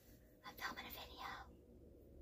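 A woman whispering quietly to herself for about a second, breathy and without full voice.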